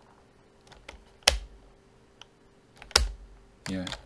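Computer keyboard being typed on: two sharp key strikes about a second and a half apart, with a few faint clicks between them.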